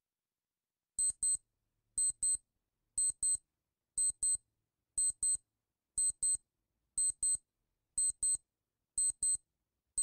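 Countdown timer's electronic beeps: a high-pitched double beep once a second, ticking off the last ten seconds of the count.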